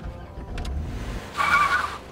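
Volkswagen van's engine running low under acceleration, then its tyres squealing sharply for about half a second near the end as it takes a turn.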